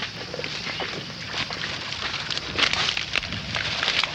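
Dry reeds and marsh grass rustling and crackling in quick irregular bursts as someone pushes through them on foot.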